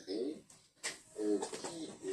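A man's voice making two drawn-out, hesitant vowel sounds, one at the start and one just past the middle, in a small room.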